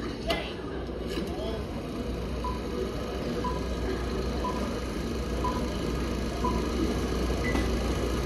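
Stage show sound effects over the theatre speakers: a steady low drone with a short high beep about once a second, five in a row.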